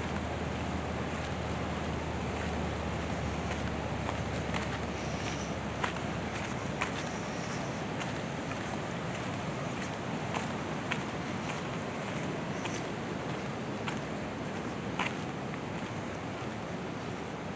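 Steady rush of the Yellowstone River running fast over rocks, with a few scattered footsteps on a dirt trail.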